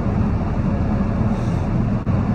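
Semi truck cruising on the highway, heard inside the cab: the diesel engine and road noise make a steady low drone.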